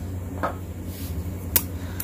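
Knives being handled and picked up off a wooden tabletop: a soft knock about half a second in and a sharp metallic click about a second and a half in, over a low steady hum.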